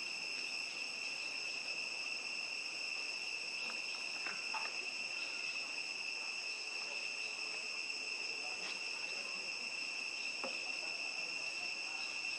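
Steady, high-pitched drone of insects calling without a break, with a few faint clicks now and then.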